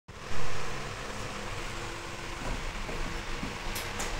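Steady background hum and hiss, with a louder swell just after the start that fades within about half a second.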